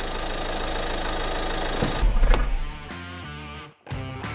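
Car engine running as the car drives on a dirt track, with a deep low rumble swelling about two seconds in. Music notes take over after that, and the sound cuts off suddenly just before the end.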